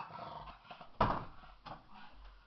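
A pug barking, with one short, sharp bark about a second in and a fainter one just after.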